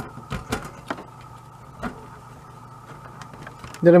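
A few light, sharp clicks and taps in the first two seconds as a car-stereo cassette deck is handled and pressed down onto the radio's circuit board, its connector being seated, then only a faint steady hum.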